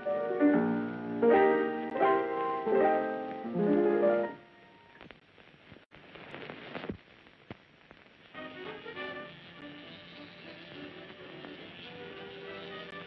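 Piano chords played loudly for about four seconds, then breaking off. A few quiet seconds with a couple of light knocks follow, and fainter music starts up again about eight seconds in.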